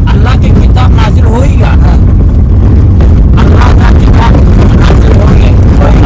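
Loud, steady low rumble of a car's engine and road noise heard inside the cabin, with a man's voice talking over it.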